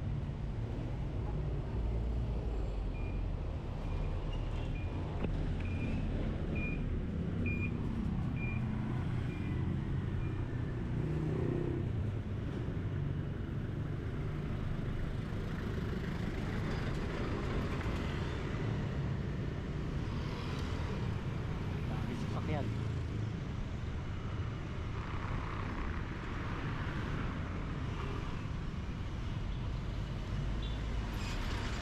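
Street traffic with a passenger jeepney's diesel engine running close by, a steady low rumble, and people's voices in the background. A few seconds in, a string of short, evenly spaced high beeps repeats for several seconds.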